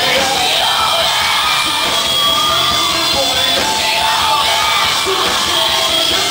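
Live rock band playing loudly, with the singer yelling the vocal line over the band.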